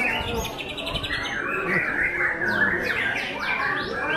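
White-rumped shama singing a dense, varied song of rapid trills and repeated downward-sweeping whistles. It overlaps the songs of other caged birds.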